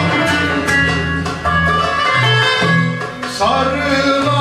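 A Turkish music ensemble playing a Rumeli folk song (türkü): plucked strings over a repeating bass line, with a male solo voice coming in near the end.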